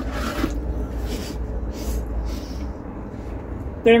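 Someone biting into a slice of pizza and chewing, with four short crunchy noises about three-quarters of a second apart, the first and loudest at the bite, over a low steady hum.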